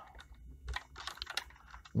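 Small plastic and metal clicks and rattles, several short irregular ticks, as test leads are pulled off and pushed onto the terminals of a Desynn transmitter on its test set.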